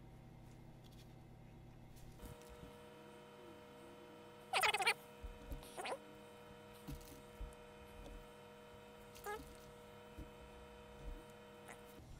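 Small handling noises of gloved hands drawing pull string through igniter cups with an upholstery needle. The loudest is a short noisy pull about four and a half seconds in, with fainter ones near six and nine seconds. A faint steady hum starts about two seconds in.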